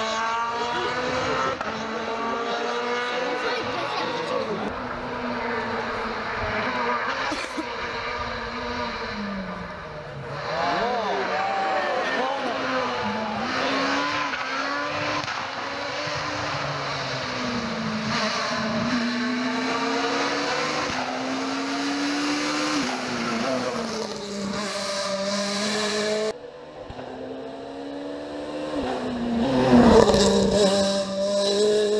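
Peugeot 207 rally car engine revving hard through the gears, its pitch climbing in each gear and dropping at every shift as the car drives past. The sound breaks about ten seconds in and again near the end, where a new pass of the car takes over.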